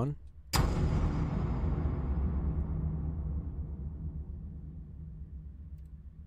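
A single cinematic impact 'hit' sample played back through the Black 76 FET compressor/limiter plugin: one sudden boom about half a second in, heavy in the low end, with a long tail that fades away over the following five seconds.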